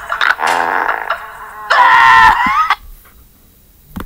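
Cartoon character's wordless vocal sound effects: a short warbling cry, then a long, high wail lasting about a second.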